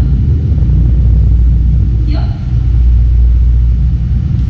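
A loud, steady low rumble, with one short voice call about two seconds in.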